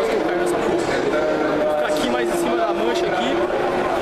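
Overlapping voices of a crowd of football supporters talking and chanting, with a few long held notes among the chatter.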